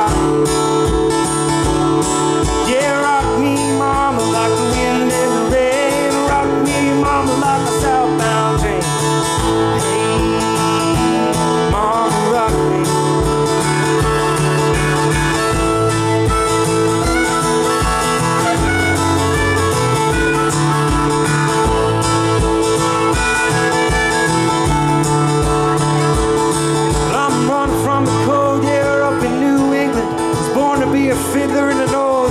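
Acoustic guitar strummed in a steady country rhythm, with a bending melody line played or sung over it.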